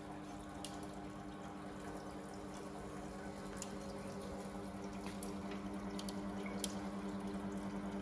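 Desktop filament extruder running, its electric drive motor giving a steady hum of several tones, with a few faint clicks. The hum grows slightly louder toward the end.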